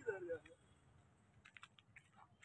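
Mostly quiet. A person's voice is heard faintly and briefly at the start, then a few faint clicks come about one and a half seconds in.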